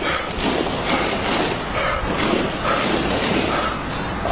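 Body-worn police camera audio while the officer moves at speed: rubbing and jostling of the camera against his gear, with repeated thuds.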